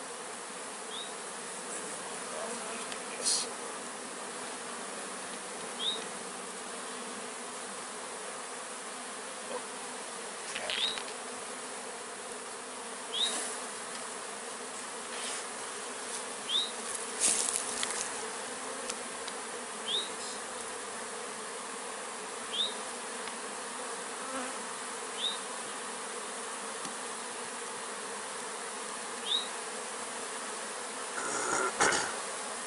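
Honey bee swarm buzzing steadily in and around a hive box as it settles into it. A short high chirp recurs every few seconds, with a couple of sharp clicks.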